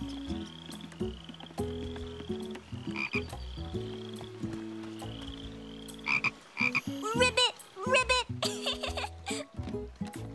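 Cartoon frog croaking: a run of croaks in the second half, the loudest near the end, over low held notes.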